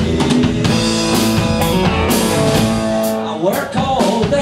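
Live rock band playing: electric guitars, bass guitar and drum kit, with regular drum hits under sustained guitar chords and a brief dip in loudness near the end.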